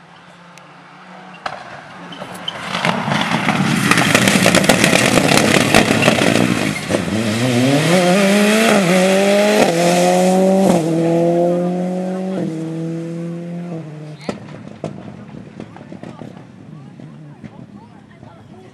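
A rally car at full throttle. Engine and rushing road noise build to a peak about four seconds in, then the engine climbs hard through about five quick upshifts, its pitch rising and dropping back at each gear change, before it fades away in the last few seconds.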